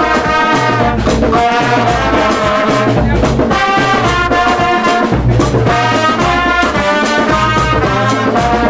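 Live brass band playing: trumpets and trombone sound held, harmonised notes over a steady drum beat.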